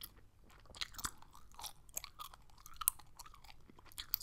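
Gum chewing close to a microphone: a quick, irregular run of small mouth clicks and smacks.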